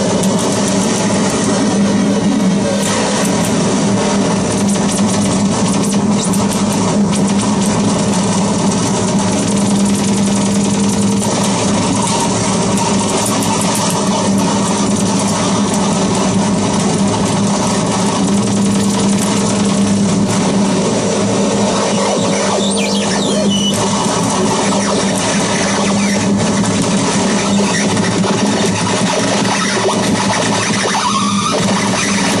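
Harsh noise from a contact-miked metal plate worked by hand and run through fuzz and distortion pedals, a digital delay and a Sherman Filterbank: a loud, dense, unbroken wall of distorted noise over a steady low drone. A few sliding whistles rise out of it about three-quarters of the way through.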